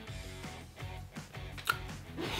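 Quiet background music with steady held notes, and a brief faint click near the end.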